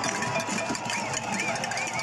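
Large street-protest crowd: a dense, steady din of many voices with rapid clatter, and a short high tone rising and falling over and over.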